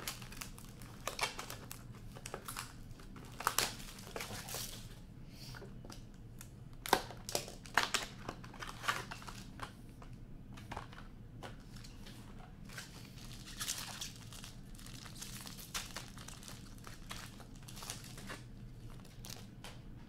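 Plastic wrapping of a trading-card box being torn open and crinkled: a run of sharp, irregular crackles and rustles that grows denser in the second half.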